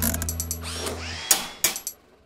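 The last held note of a children's cartoon song dies away under a short whirring, ticking sound effect. A few sharp clicks follow near the end before it goes silent.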